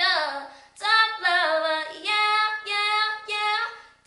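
A female solo voice singing with no accompaniment heard, in sustained phrases that bend in pitch, with short breaks between them.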